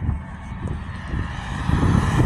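Police SUV driving past on the street, its engine and tyre noise growing louder in the second half as it draws near.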